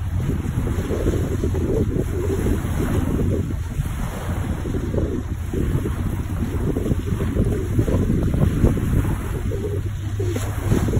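Wind buffeting the microphone in a steady low rumble, over small waves washing onto a pebble beach.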